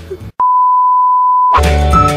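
A single loud, steady, high beep, one pure tone held for about a second and cut off abruptly: an edited-in bleep sound effect. Music with a strong beat starts right after it, near the end.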